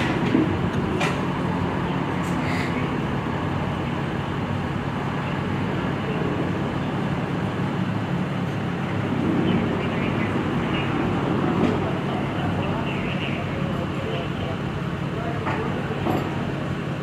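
Steady low rumble of idling engines and street traffic, with indistinct voices talking under it and a few faint clicks.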